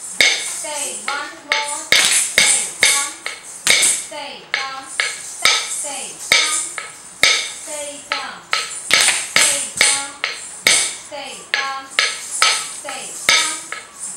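A wooden stick is struck on a wooden block (a Bharatanatyam thattu kazhi on a thattu palakai), keeping a steady beat of about two strikes a second. A woman's voice chants rhythmic dance syllables in time with it.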